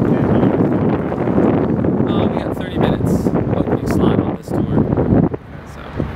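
Wind buffeting the microphone: a loud, gusty low rumble that eases about five seconds in.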